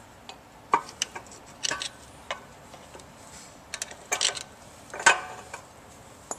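Flat-blade screwdriver prying apart the two halves of a pump shaft coupling: irregular metal clicks, knocks and short scrapes, the strongest around four and five seconds in, as the coupling half works loose.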